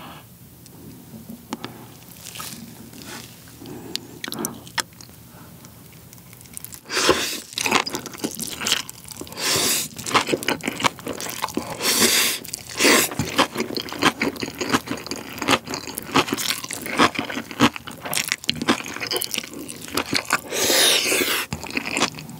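Close-miked eating sounds of Chapagetti black-bean instant noodles and spicy napa cabbage kimchi. After several seconds of quieter soft clicks, loud noodle slurping starts about seven seconds in, followed by wet chewing with crunching, in irregular loud bursts.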